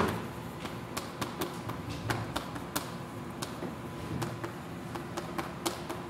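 Chalk writing on a chalkboard: an irregular run of sharp taps and short scratches as letters are formed, the loudest tap right at the start. A faint steady hum lies underneath.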